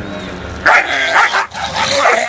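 Dog barking: two loud, rough barks starting about two-thirds of a second in.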